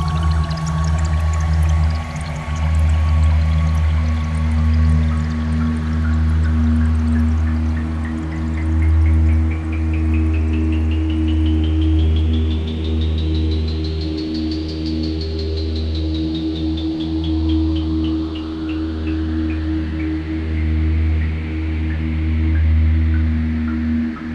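Generative ambient music on a modular synthesizer: a steady low drone with held tones above it, and a rapid train of pulses that climbs in pitch to about the middle, then falls away while another sweep rises near the end.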